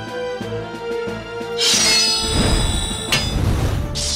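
Dramatic background music with held tones. About a second and a half in, a loud rushing sound effect swells over it and fades, and a sharp hit comes near the end.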